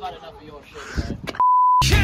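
A single steady, high-pitched electronic bleep tone, lasting under half a second, about a second and a half in; the rest of the sound drops out under it, like a censor bleep. Rock music with guitar comes in straight after it.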